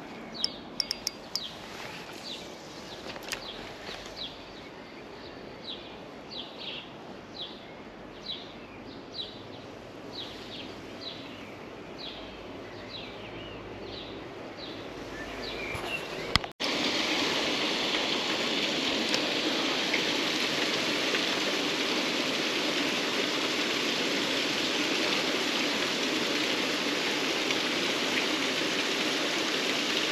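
Quiet outdoor background in which a bird repeats a short high call over and over, with a few sharp clicks near the start. About halfway through, the sound cuts abruptly to a steady, louder rush of running water.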